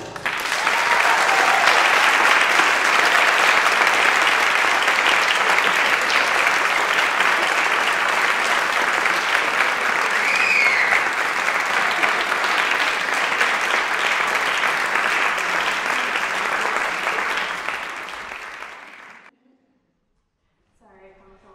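Audience applauding: a sustained round of clapping that fades away and stops about nineteen seconds in.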